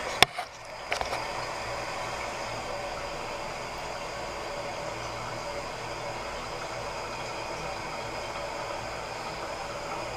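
Toilet fill valve running, water hissing steadily into the tank as it refills after the supply is turned back on. A couple of sharp clicks near the start.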